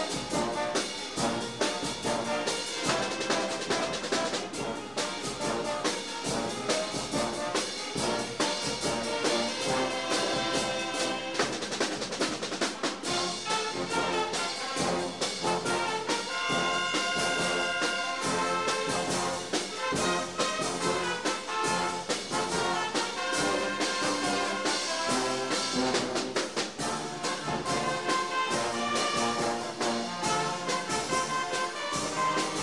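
Concert wind band playing: brass and woodwinds together, tubas in the bass under trumpets and saxophones, with a steady rhythmic beat.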